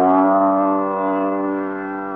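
A plucked string note in a Hindustani classical alap, on sitar or sarod, sliding up in pitch as it starts (a meend), then ringing on and slowly fading over a steady drone.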